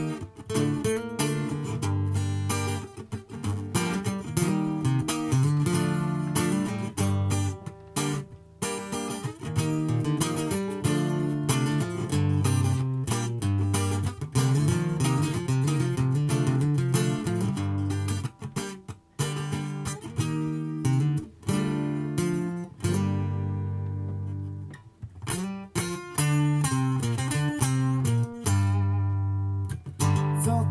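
Acoustic guitar played live, strumming and picking chords through a song's instrumental introduction. There are a couple of brief stops, and chords are left to ring out and fade later on.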